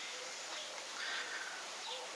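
Faint bird calls, a few short notes, over a steady low hiss.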